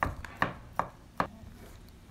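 Large kitchen knife chopping soft string cheese on a wooden cutting board: four sharp chops in quick succession over the first second and a half, then only faint taps.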